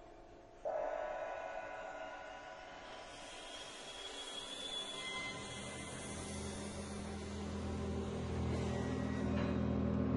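Orchestra playing contemporary orchestral music: many sustained notes enter suddenly about half a second in, and a high shimmering layer joins a few seconds later. Low instruments come in around the middle and the held sound swells louder toward the end.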